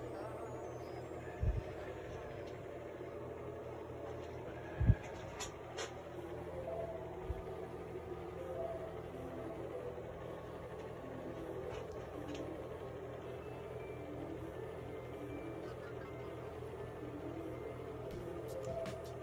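A steady low hum under faint, indistinct background sound, broken by two dull thumps; the louder one comes about five seconds in.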